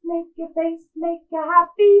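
A woman singing a simple children's song, short syllables mostly on one repeated note, rising to a higher held note near the end, with no accompaniment.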